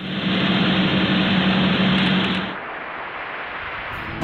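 A machine running with a steady hum over a dense mechanical noise; it drops to a lower level about two and a half seconds in.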